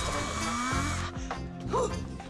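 Cordless power drill whirring as it bores into a door frame, stopping about a second in.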